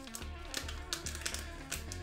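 Quiet background music, with a few sharp crinkles and clicks from a foil trading-card booster pack being torn open by hand.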